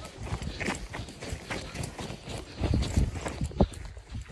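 Footsteps crunching in fresh snow over rocky ground, an uneven few steps a second with the heaviest ones near the end, over a low rumble.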